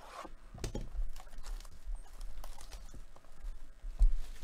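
A cardboard trading-card hobby box being handled and opened by hand: an irregular run of scrapes, taps and rustles of cardboard.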